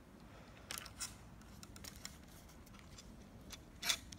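Faint clicks and rubbing from handling a Lew's Mach 2 baitcasting reel as its side plate is being latched back on, with a couple of light clicks about a second in and a sharper click near the end.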